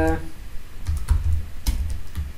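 Typing on a computer keyboard: a few separate keystrokes about a second in.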